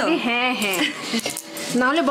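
Stainless-steel kitchen containers clinking and being handled on a table, with short metallic clicks, under a woman's voice.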